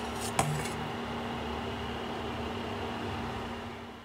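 Steady low kitchen hum and rumble, with a couple of light clinks of a utensil against cookware about half a second in as the boiled dumplings are lifted out; the hum fades a little near the end.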